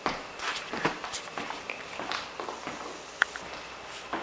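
Footsteps on a wood floor: a run of soft steps, with one sharp click just after three seconds in.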